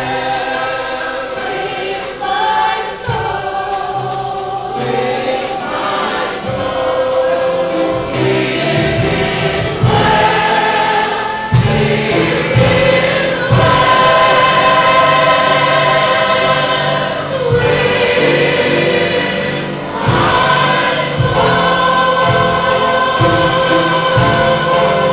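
Gospel hymn sung by a woman with other voices joining, backed by a church band with drums and bass. The singing grows louder about halfway through.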